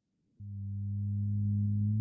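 A low, steady electronic tone with a few overtones fades in about half a second in and swells gradually. It is a synthesized section-break sound between headings of a text-to-speech narration.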